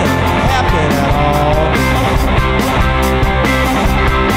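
Live rock band playing an instrumental passage: electric guitars with bending notes over bass and drums, with a steady cymbal beat.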